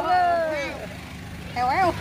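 A person's drawn-out vocal sound that holds and then falls away, followed a second later by a short rising-and-falling voice, over a steady low rumble.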